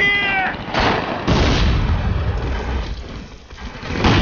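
A brief shout, then two bomb blasts about half a second apart a little under a second in, their rumble dying away over the next two seconds.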